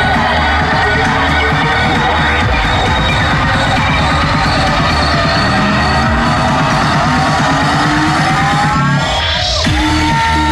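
Loud electronic dance music with a steady, driving beat. About nine seconds in, the beat drops out briefly under a rising sweep, then comes back.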